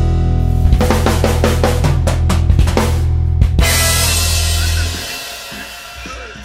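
A rock band's closing bars: a string of drum hits on kit and cymbals over a held electric bass and guitar chord. The chord then rings out and fades about five seconds in.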